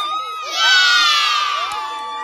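A small crowd of onlookers cheering and screaming with joy. A long, high-pitched scream starts about half a second in and is the loudest part, slowly falling in pitch, and a second sustained cry joins near the end.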